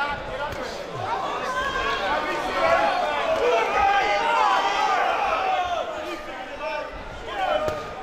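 Ringside crowd shouting and cheering at a boxing bout, many voices overlapping, loudest through the middle. A few thuds of gloved punches land in among it.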